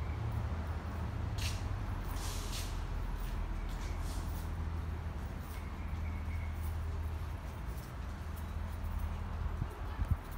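Steady low rumble of background noise, with scattered light clicks and scuffs of footsteps on concrete.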